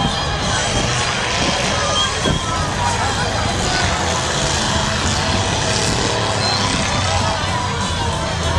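Engines of figure-8 race cars towing trailers around a dirt track, mixed with grandstand crowd chatter, at a steady level throughout.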